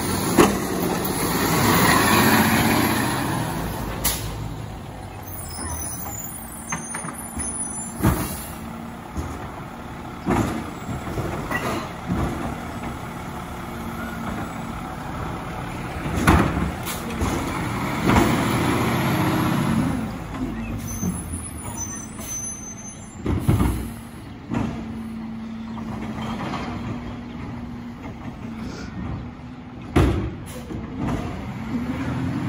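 Diesel engine of a Labrie Automizer automated side-loader garbage truck, revving in swells as it works and moves along the street, with air-brake hisses and several sharp knocks.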